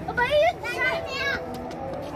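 Children's high-pitched voices calling out and chattering in the first second and a half, then quieter background.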